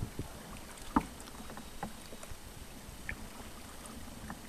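Kayak paddling slowly through shallow water among reeds and floating sticks: light paddle-and-water sounds with a few sharp knocks, the loudest about a second in.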